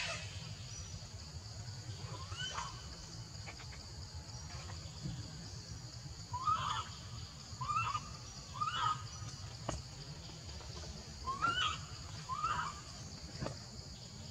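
Steady high-pitched insect chorus over the low sound of stream water. Six short calls stand out, each rising and then dropping in pitch, once about two and a half seconds in and then in two clusters through the second half.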